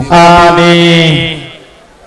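A man's voice chanting one long held note on a steady pitch, which fades away about a second and a half in.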